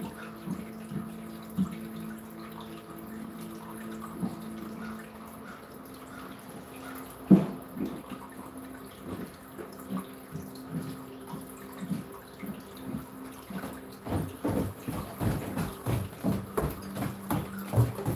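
Footsteps thudding on stairs or floor, coming faster and louder over the last few seconds, over a steady low hum. Scattered knocks, with one sharp knock about seven seconds in.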